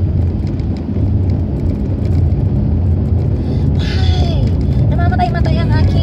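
Steady low rumble of a car's engine and tyres on the road, heard from inside the cabin while driving. Near the end a voice comes in.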